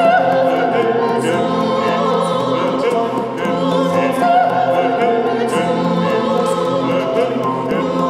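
A choir singing classical music with orchestral accompaniment, in long held notes with vibrato and a steady level.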